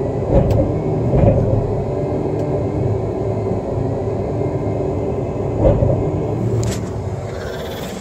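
Caterpillar 120M motor grader's diesel engine running steadily at rest, a low rumble heard from the operator's cab. A few brief knocks sound over it: one at the start, one about a second in, and one near six seconds.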